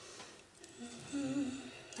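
A woman humming a short, wavering phrase for about a second, starting a little before the middle.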